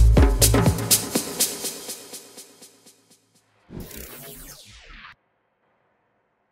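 Electronic dance track with a programmed hi-hat ticking in an even pattern, fading out over about three seconds after its bass drops away. About four seconds in comes a short whoosh transition effect that falls in pitch, then silence.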